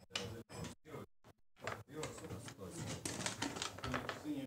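Backgammon checkers clicking against the board as a move is played, a quick run of sharp clicks, denser in the second half.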